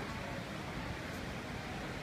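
Steady background noise of a large indoor mall atrium: an even rush with no distinct events.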